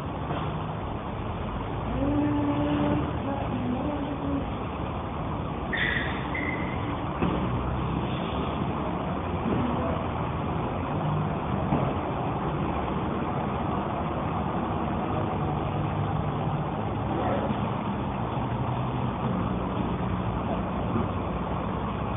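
Steady low rumble of an idling engine, with faint indistinct voices and a brief high squeak about six seconds in.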